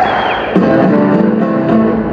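Live blues-rock band playing, led by a Fender Stratocaster electric guitar, with a short high falling note at the start.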